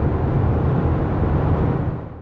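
Cabin noise inside a Fiat Ducato Serie 8 van with its 2.3-litre Multijet diesel, cruising on a country road: a steady low engine drone with road and tyre noise. It begins to fade out near the end.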